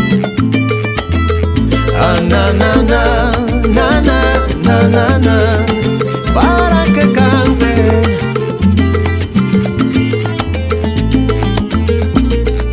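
Cuban salsa band music with a steady repeating bass line and percussion; a wavering melodic lead line comes in about two seconds in and drops out around eight seconds.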